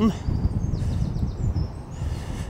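Low, uneven rumble of wind buffeting the microphone outdoors, with a few faint high bird chirps near the middle.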